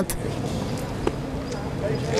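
Outdoor street ambience with steady traffic noise, and a single sharp click about a second in.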